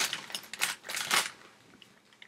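A large potato chip bag being pulled open and crinkled by hand, with a few short noisy rustles in the first second or so.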